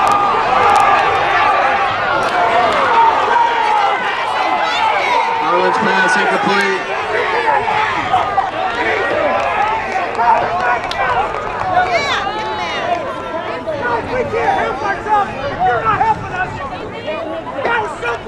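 Football stadium crowd, many voices shouting and cheering at once as a play runs, a little louder in the first half.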